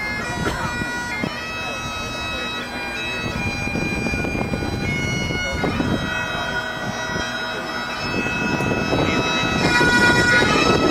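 Massed Highland bagpipes playing a tune over their steady drones, the melody stepping from note to note. The sound grows louder near the end.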